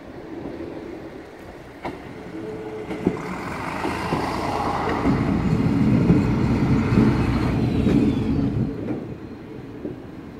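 SA108 diesel railcar arriving at a station and passing close beneath. Its engine and wheel rumble grow louder to a peak about six to seven seconds in, then fade. Sharp clicks sound about two and three seconds in.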